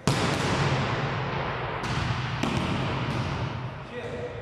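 A volleyball spiked hard, a sharp smack right at the start, then the ball bouncing a couple of times about two seconds in, with the gym hall echoing.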